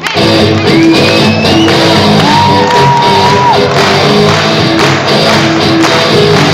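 Live rock band with a symphony orchestra playing loudly, electric guitar among them. The full ensemble comes in abruptly at the start, and a high note slides upward partway through.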